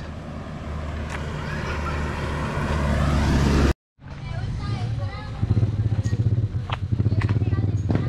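A motor vehicle engine grows steadily louder as it approaches and is cut off abruptly a little under four seconds in. Then another engine runs with a fast, even pulsing beat.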